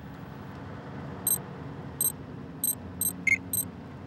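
Short electronic computer beeps, six of them at uneven spacing from about a second in, one lower in pitch than the rest, as a map is plotted on a monitor. Under them runs the steady low hum of a bus engine.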